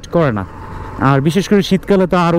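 A man talking while riding, with a low, steady motorcycle engine and road noise underneath.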